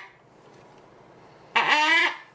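Green-winged macaw giving one short, loud call about one and a half seconds in, its pitch sweeping up at the start, while its throat is being checked.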